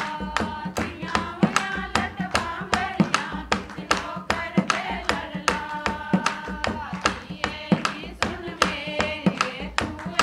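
Group of women singing a Pahari folk song in unison to a hand-played dholak, with hand clapping marking a steady beat.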